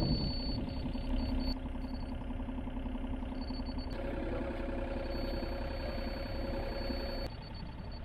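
Steady idle of a diesel engine from nearby machinery, with a faint thin high whine on and off. The hum shifts in tone about four seconds in.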